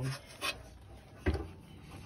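Hands handling the freshly cut exhaust pipe under a car: faint rubbing, with two short knocks about half a second and a second and a quarter in.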